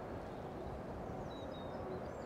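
Faint high bird chirps, a few short calls, over low steady outdoor background noise.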